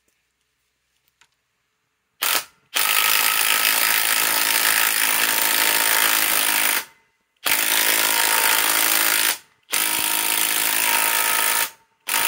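DeWalt Atomic DCF921 cordless impact wrench hammering through a right-angle adapter on a long screw in a log: a short burst about two seconds in, then three long runs of rapid hammering with brief pauses between them. The screw does not go in: not enough power, much of it lost through the adapter.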